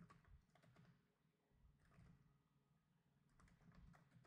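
Faint computer keyboard typing: a few scattered keystrokes in a short run near the start, another around the middle and a few more near the end, with near silence between.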